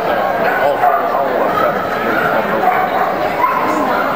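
A dog barking and yipping repeatedly over the continuous talk of many people in a large room.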